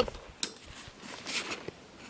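A few quiet clicks from a hand handling a rifle's bipod, one about half a second in and another about a second later.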